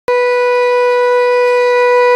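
Conch shell (shankha) blown in one long, loud, steady note that starts suddenly.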